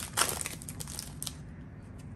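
Plastic wrapper of a Donruss baseball card pack crinkling and tearing as it is opened by hand: a few sharp crackles in the first second or so, then a softer rustle.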